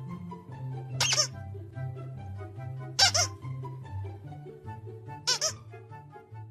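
Squeaky plush dog toy squeaking in short sharp squeaks over background music: one about a second in, one about three seconds in, and two in quick succession near the end.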